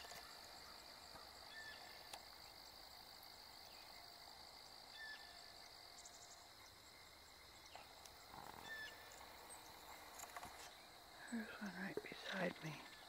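Near silence: a faint steady high-pitched insect drone, with a few faint short chirps.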